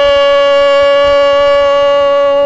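Male Yakshagana bhagavata (singer) holding one long, steady sung note at full voice, after a gliding ornament that leads into it.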